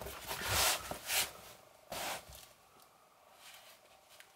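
Rustling and scraping of a fabric knife pouch as a hand moves among the folding knives clipped into it, in a few short bursts during the first two seconds, then quieter.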